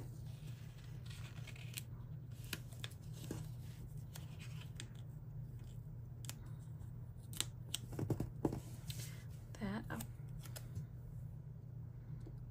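A paper sticker being picked at and peeled off a planner page: scattered small clicks and rustles of sticker paper, over a low steady background hum.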